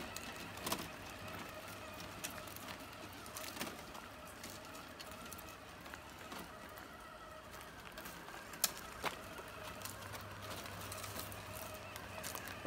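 Faint, steady whine of RC semi-truck electric motors and gearing straining as one truck tows another, heavy truck uphill, with a few light clicks.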